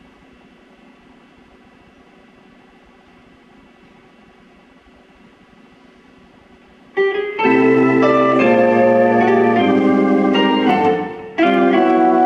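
Low steady hiss for about seven seconds, then a live band starts loud: sustained electric organ chords over bass guitar. The playing drops out for a moment just before the end and comes straight back in.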